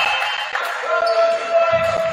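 Several voices shouting and cheering together at a volleyball point, with a couple of low thuds.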